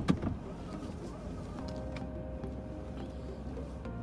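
Car engine idling while the car stands parked, heard from inside the cabin as a low, steady hum.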